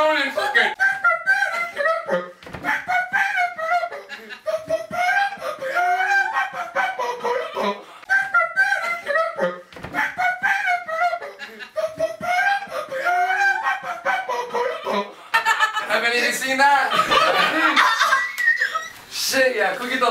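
A man vocally imitating a wailing saxophone solo into a microphone: about fifteen seconds of wavering, bending sung notes in short phrases. Audience laughter follows from about three-quarters of the way in.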